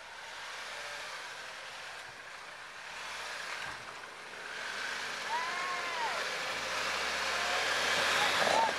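Jeep Wrangler running at low speed as it crawls down a rocky trail, getting louder as it comes closer, over a steady rushing background noise.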